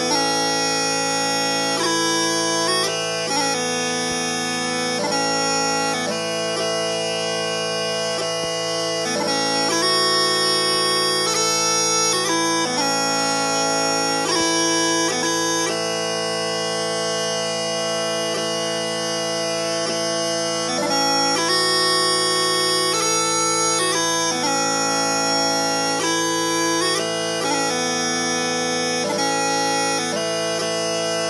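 Scottish smallpipes playing a waltz melody on the chanter over a steady, unbroken drone.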